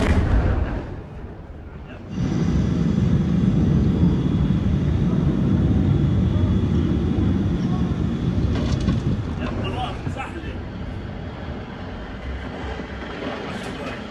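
Airstrike explosions on apartment buildings: a blast at the start, then a second sudden blast about two seconds in that runs on as a long, heavy low rumble and eases off about eight seconds later.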